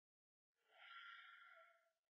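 A young woman's soft sigh, one faint breath that fades out.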